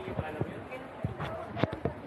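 Footsteps on a concrete walkway: a string of short, irregular knocks, several a second, with faint voices of people nearby.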